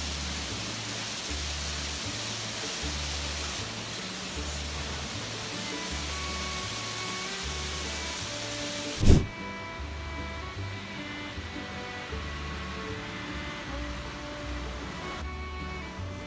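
Background music with a steady bass beat, over an even hiss. The hiss drops away at a single sudden loud hit about nine seconds in.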